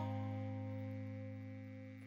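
Background music: a single held chord that rings on and slowly fades away.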